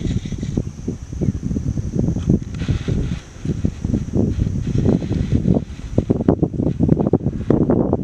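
Wind buffeting the microphone in loud, uneven gusts over the rushing rumble of water pouring through a dam's open spillway gates.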